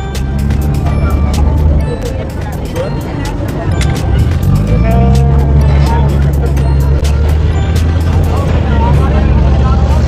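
Deep engine drone of a river cruise boat, rising in pitch about four seconds in and then holding steady, with passengers chattering around it.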